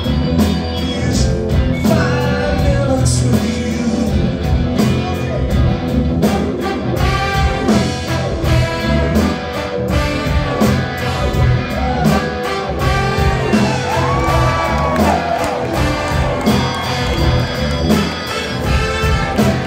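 Live rock band music with a horn section: trumpet, saxophone and trombone playing over electric guitar, bass and a steady drum beat, heard from the audience in a hall.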